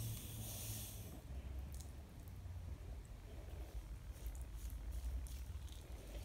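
Trigger spray bottle misting water onto hair: a hiss that stops about a second in. After it, only faint handling noise of hands working through the hair.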